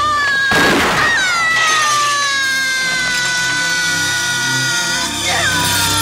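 A person's long, high-pitched scream, held for about five seconds and sinking slowly in pitch, then catching again in a second scream near the end. A short rushing noise cuts in about half a second in.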